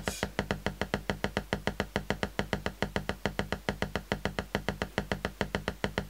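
Output of a DIY Lockhart wavefolder synth module driven by a slow square wave, heard as a rapid, even train of clicks, about eight a second. Each cycle of the folded wave gives several pulses.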